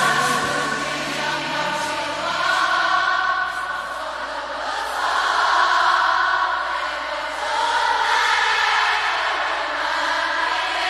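A slow pop ballad sung by many voices together, sounding like a choir. The low accompaniment drops away after about three seconds, leaving mostly the voices.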